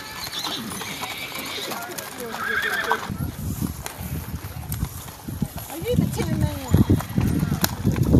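Horses' hooves clip-clopping on gravel as several ridden horses walk past, with a horse whinnying in the second half.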